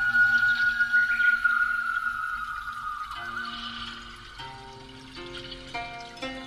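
Instrumental Chinese music playing through a car's stereo, an upgraded system of factory speakers with an added ribbon tweeter and active subwoofer. A long held high note sinks slightly over the first three seconds, then shorter notes at several pitches follow.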